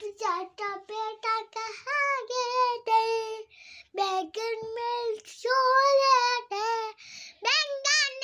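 A young boy singing a nursery rhyme in a high child's voice, syllable by syllable with short pauses between phrases.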